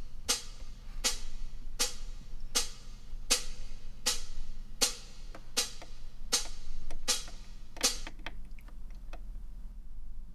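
Hi-hat track from a live-played drum replay, heard solo: a steady pattern of cymbal strikes about every three-quarters of a second, each ringing out briefly, with lighter, quicker ticks near the end.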